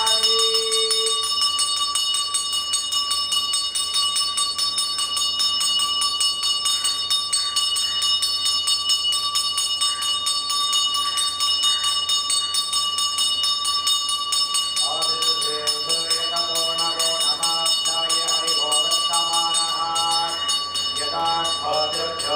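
A ritual hand bell rung continuously with fast, even strokes, its high ringing tone held throughout, as it is during a puja offering of incense. From about two-thirds of the way in, men chanting join over the bell.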